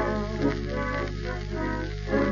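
Tango band playing a short instrumental passage with held notes between sung lines, from a 1931 78 rpm shellac recording, with a steady low hum beneath.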